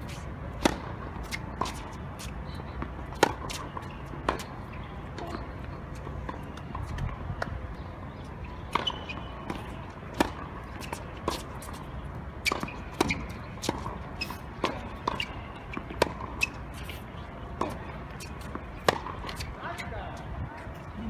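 A tennis ball being bounced before serves and struck by rackets in a rally: a string of sharp pops, irregularly about once a second.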